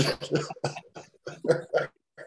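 A person laughing in a string of short bursts, starting with one loud burst.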